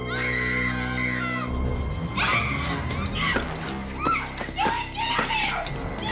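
Tense orchestral horror score with a held high note, then a woman's repeated, pitch-bending screams from about two seconds in as she thrashes on the floor under an unseen attacker.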